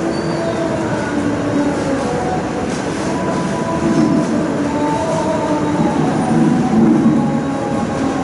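A man's voice over a loudspeaker system in an echoing hall, running on without clear pauses and smeared by reverberation so that the words are blurred.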